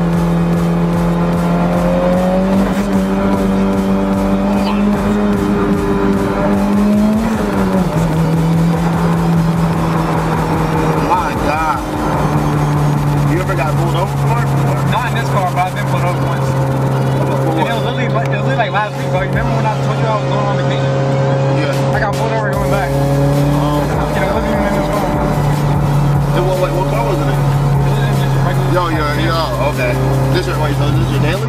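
Tuned Mitsubishi Lancer Evolution X's turbocharged four-cylinder engine heard from inside the cabin, a steady drone while driving. Its pitch climbs and then drops sharply about seven seconds in, like a gear change, and settles lower again about twelve seconds in.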